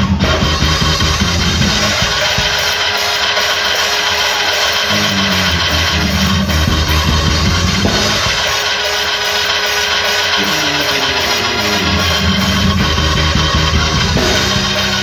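Loud band music with drums and a bass line that steps up and down in pitch.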